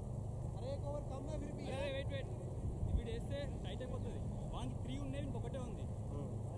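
Distant men's voices calling out across the field over a steady low rumble, with one short low thump about three seconds in.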